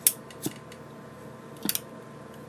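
Three or four short, sharp clicks (the loudest right at the start, another about half a second in, and a quick pair near the end) over a steady faint hum.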